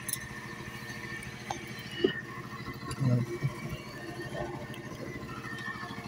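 Low steady machinery hum with a faint steady high whine, and a few light clicks as multimeter test probes are worked into the pins of a wiring connector.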